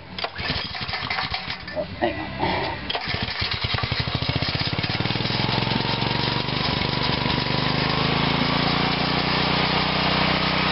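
A small Subaru engine running on a weedeater carburettor is pull-started warm, without choke. It sputters and knocks irregularly for about three seconds, catches, picks up speed over the next few seconds and then runs steadily.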